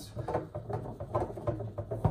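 Foosball table rods being slid and shifted by hand in a slow "cold" defense, giving irregular light knocks and clacks of the rods, bumpers and plastic men.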